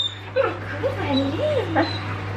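A dog whining in several wavering, rising-and-falling whines while being greeted and petted.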